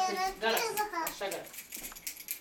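A young child's high-pitched voice, talking in short broken phrases without clear words.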